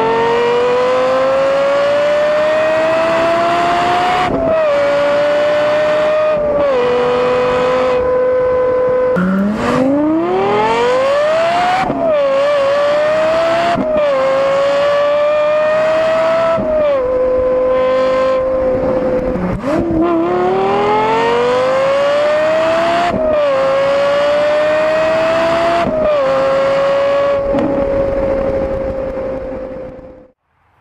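Lexus LFA's 4.8-litre V10 engine accelerating hard in three runs, its pitch climbing and stepping down at each upshift, with stretches held at steady high revs between. The sound cuts off suddenly at the end.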